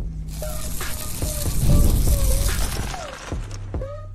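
Podcast intro music: a loud rush of hiss-like noise swells up and fades away, peaking about halfway through, over a steady low bass and a short stepping melodic line.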